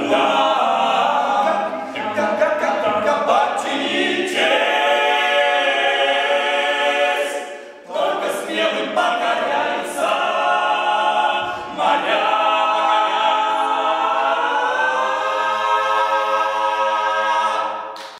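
Male a cappella group of five voices singing in close harmony, with sustained chords and short breaks about eight and eleven seconds in, then a long held final chord that swells upward and ends just at the close.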